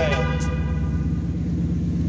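2015 Ford Mustang engine idling steadily through a muffler-delete exhaust, described as way too quiet. A brief voice-like falling call sounds over it at the start.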